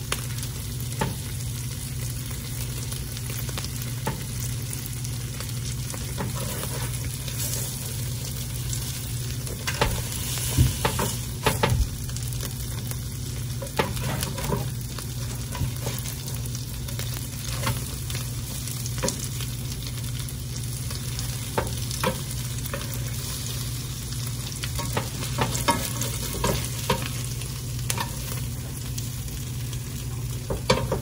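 Sandwiches sizzling steadily as they fry in butter in a skillet, with occasional sharp clicks and scrapes of a spatula against the pan, most of them about ten to twelve seconds in and again near the end.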